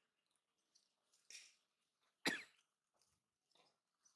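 Near silence broken by one short, sharp cough-like sound a little past halfway, with a faint rustle shortly before it.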